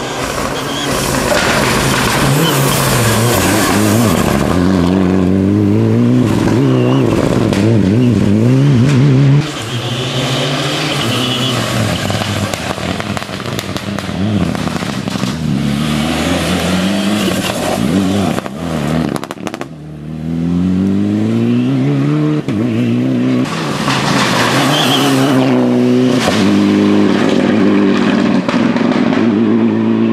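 Ford Fiesta rally car at full stage speed, its engine revving hard and climbing through the gears. The pitch rises and drops again and again with each shift and lift, over several separate passes.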